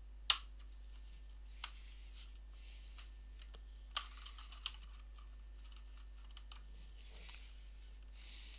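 Thin metal picks clicking and scraping against a laptop's plastic keyboard as they pry at its retaining clips, which are gummed up and won't slide back. A few sharp clicks, the loudest just after the start, with soft scraping between them.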